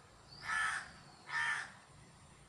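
A crow cawing twice, two harsh calls about a second apart.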